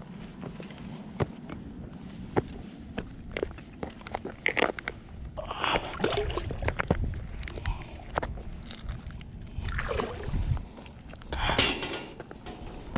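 Handling noise of a striped bass being lifted from the water by hand and carried up a concrete canal bank: scattered clicks, knocks and footsteps, with a few louder rustling bursts near the middle and end.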